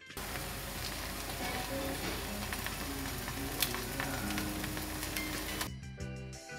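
Eggs frying in holes cut in slices of bread in a pan, a steady sizzle that cuts off shortly before the end.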